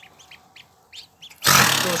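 Newly hatched Muscovy ducklings peeping faintly, a handful of short high peeps. About a second and a half in, a sudden loud rushing noise takes over as a hand works in the nest box beside the sitting mother duck.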